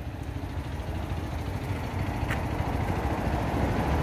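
Street traffic: a motor vehicle's engine running nearby, a steady rumble that grows gradually louder.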